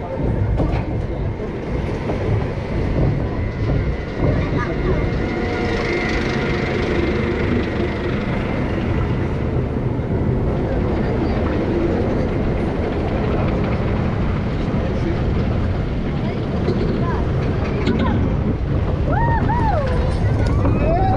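Roller coaster train running on its track, a steady low rumble of the wheels with wind on the microphone. Riders' voices call out near the end as the train crests and banks.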